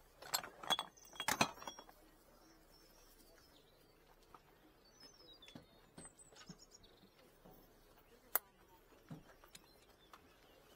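Small objects being handled on a stall table: a quick run of clinks and clatters in the first second and a half, then occasional small knocks, with one sharp click about eight seconds in.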